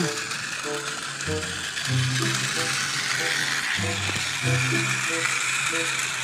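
Battery-powered toy train running on plastic track, its small gear motor whirring steadily and the wheels rattling.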